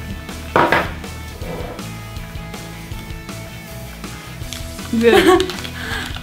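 Folded paper slips rustling and knocking inside a plastic bucket as one is drawn out, over quiet music.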